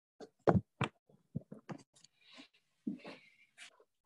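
About a dozen irregular short knocks and thumps, the loudest about half a second in, with two soft hisses in between.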